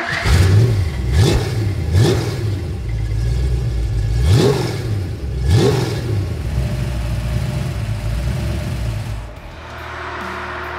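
Freshly rebuilt Ford 289 small-block V8, built with a new cam, four-barrel carburetor and headers, running on an engine stand through a pair of mufflers. The throttle is blipped five times in the first six seconds, each rev rising and falling quickly, and then the engine idles steadily.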